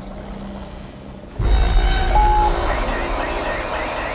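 Horror trailer sound design: a quiet low hum, then about a second and a half in a sudden loud, deep wash of noise with a short steady tone above it.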